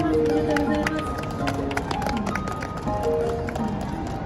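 Pre-recorded backing music playing through a street performer's portable speaker, with long held notes, while the singer is off the microphone. A series of sharp clicks sounds in the first half.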